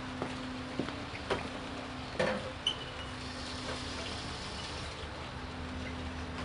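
Empty glass beer bottles knocking and clinking a few times as they are carried and set down on a concrete sink, one clink ringing briefly, over a faint steady hum.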